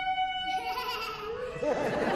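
Clarinet holding one steady high note that stops just under a second in, followed by audience laughter near the end.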